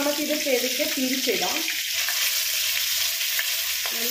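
Masala-coated sardines shallow-frying in hot oil in an iron pan, a steady sizzle, as a wooden spatula moves and turns them in the pan.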